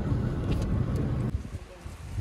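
Low rumble of a moving road vehicle, dropping in level about a second and a half in.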